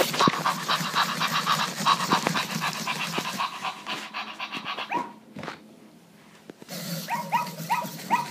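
Spin Master Zoomer robot puppy moving on its wheels while playing electronic dog sounds from its built-in speaker: a fast, rhythmic noisy sound for the first half, a short lull, then brief pitched yips near the end.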